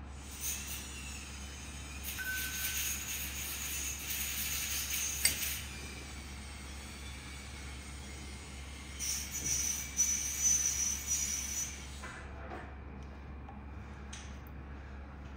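Hissing noise in two stretches, the first lasting about six seconds and the second about three seconds, with a sharp click in the first, over a low steady hum.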